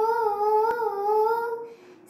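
A woman's unaccompanied voice holding one long sung note with a slight waver, breaking off for a breath near the end.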